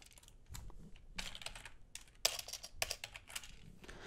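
Computer keyboard typing: a quick, irregular run of keystrokes as a short word is typed in.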